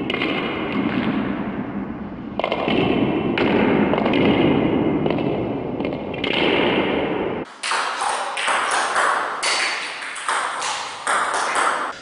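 Table tennis ball struck with backhand twist (flick) strokes off short balls over the table: a string of sharp ball-on-bat and ball-on-table clicks.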